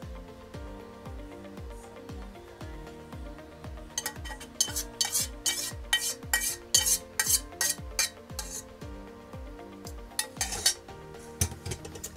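A metal spoon scraping and clinking against the inside of a stainless steel saucepan as coconut sauce is scraped out over a bowl. The clinks come in a quick, uneven run from about four seconds in until shortly before the end. Background music with a steady beat plays throughout.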